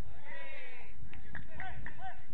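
Players shouting and calling to each other across the football pitch, several drawn-out calls overlapping, with a few short sharp knocks in the second half.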